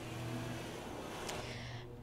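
Street traffic: a car driving past on a residential street, over a low steady hum.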